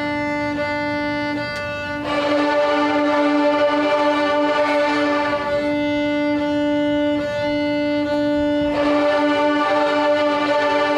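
A class of beginner student violins playing bowing warm-ups as a copycat exercise: repeated short bow strokes on one note, first thinner, then louder and fuller about two seconds in as the whole group plays it back. The pattern thins again partway through and swells once more near the end.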